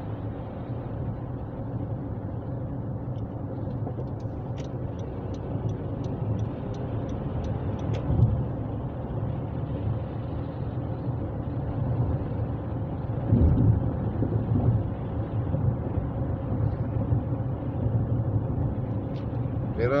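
Car cabin road and engine noise at freeway cruising speed, about 60 mph: a steady low rumble. A run of faint quick ticks lasts about three seconds a few seconds in, and two louder low thumps come later.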